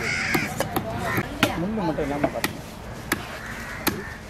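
A heavy knife chopping through a mahi-mahi onto a wooden log block: about eight sharp, irregularly spaced knocks. Voices and calls run underneath.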